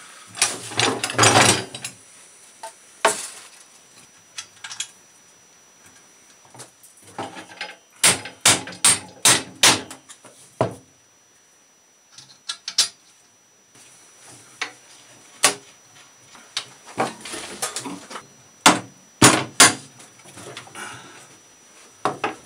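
Hammer blows driving new wooden handles onto a wheelbarrow's steel frame. There is a quick run of about six strikes about eight seconds in, then one more strike, and a close group of three or four near the end, with some scraping and handling noise at the start.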